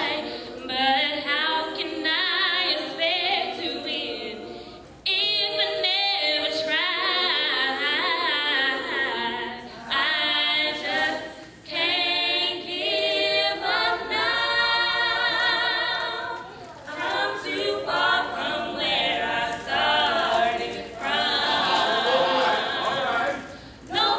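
A group of women singing a gospel song a cappella in harmony, with no instruments, in sung phrases separated by short breaths.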